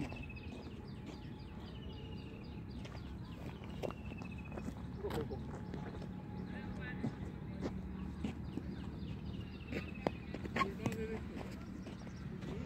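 Open-air ambience: a bird repeats a short falling whistle every second or two over a low steady hum, with scattered sharp taps and knocks and faint distant voices.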